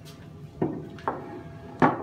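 Plates set down on a wooden table: three knocks, the last and loudest near the end, over a faint steady hum.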